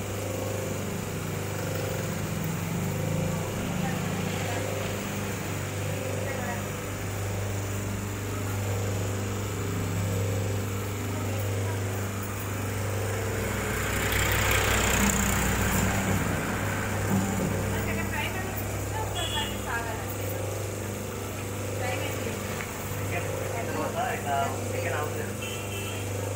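Electric motor of a semi-automatic hydraulic paper plate making machine running with a steady low hum. A louder rushing noise swells for a couple of seconds a little past the middle.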